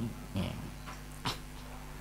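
Steady low electrical hum from a microphone and PA system, with a few short faint sounds and one sharp click about a second and a quarter in.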